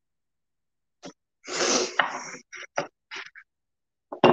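A person sneezing once, a loud burst about one and a half seconds in, followed by a few short breathy sounds.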